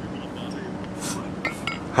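A few light metallic clinks of a pair of kettlebells knocking together, coming quickly about a second and a half in, over a steady low background hum.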